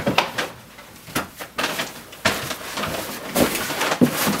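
Handling noises from a room being searched: a scattered run of knocks, clicks and rustles, with the sharpest knock about three and a half seconds in.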